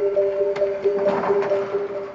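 Documentary background music: a sustained two-note chord held steady, with a brief swell in the middle.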